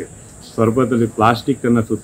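A man speaking into a microphone, starting after a half-second pause, over a steady high-pitched whine.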